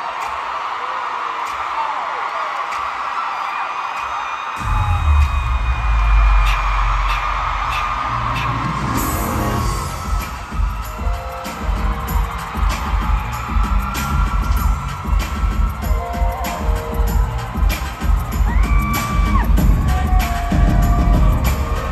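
Arena concert crowd screaming and cheering; about four and a half seconds in, a heavy bass-driven pop dance track starts suddenly over the cheering, and a few seconds later settles into a steady drum beat with synth chords.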